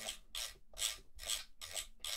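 Fingers twisting the Empress Zoia's metal encoder knob back and forth, a series of short rubbing strokes about three a second. The encoder has just been cleaned with contact cleaner.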